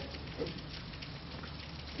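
Steady background hiss of room and recording noise in a pause of a lecture, with a faint, short spoken "Right?" about half a second in.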